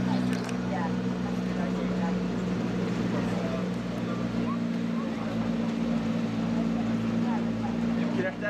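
McLaren P1's twin-turbo V8 idling steadily with an even, unchanging note.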